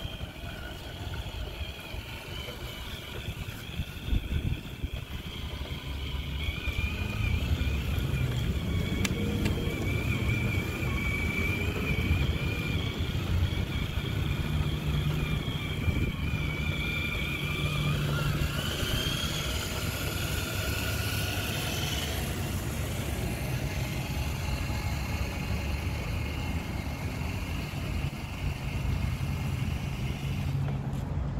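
Electric motor and gearbox whine of a Traxxas TRX-4 Ford Bronco RC crawler driving over grass while towing a trailer. The whine wavers in pitch with the throttle and rises a little past halfway, over a steady low rumble.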